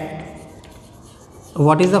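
Chalk scratching on a blackboard as a word is handwritten. It is faint and lasts about a second and a half, until a voice cuts in near the end.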